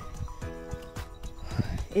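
Footsteps on a paved road, a quick uneven run of soft knocks, with steady background music underneath.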